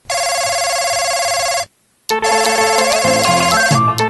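An electronic telephone ring trills once, steady and warbling, for about a second and a half. It cuts off, and after a short gap music begins with held synthesizer notes.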